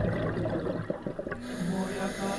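A bubbling, gurgling noise for the first second or so, then several voices singing sustained notes in harmony from about a second and a half in.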